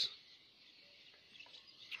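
Quiet outdoor background: a faint high hiss with distant bird chirps, and no engine running.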